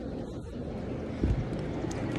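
Low wind rumble and handling noise on a hand-held phone microphone, with one dull thump about a second in.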